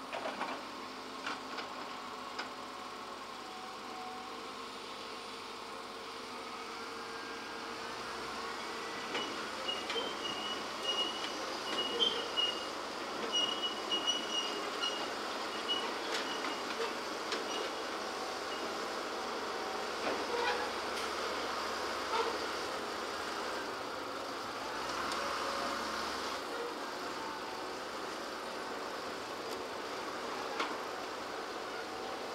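Earthmoving machinery working: an excavator, a tractor and dump trucks run steadily, with scattered metallic clanks and an intermittent high squeal. The din grows louder about a third of the way in.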